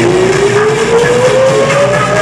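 Loud live electronic rap music over a concert hall PA, with a single synth tone gliding steadily upward in pitch throughout.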